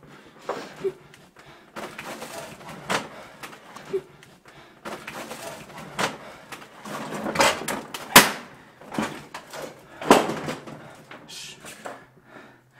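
Handheld-camera handling noise from hurried movement: irregular knocks, thumps and rustling of clothing, with the sharpest knock about eight seconds in.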